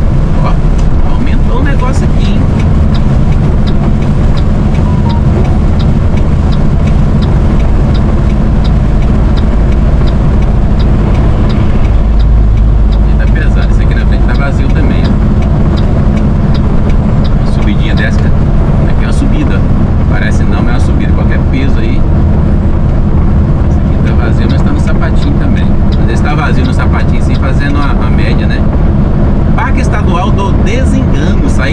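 Mercedes-Benz Atego truck's diesel engine running steadily at cruising speed, heard from inside the cab as a continuous low drone mixed with tyre and road noise.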